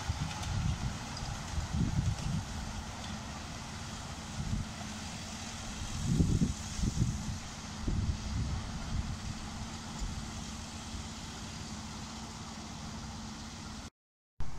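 Miniature railway passenger train running along the track as it draws away, with a steady low hum under an uneven low rumble that swells about six seconds in.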